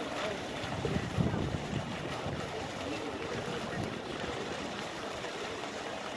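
Shallow water running steadily across the stone basin of the Louvre pyramid fountains, with a brief low rumble about a second in.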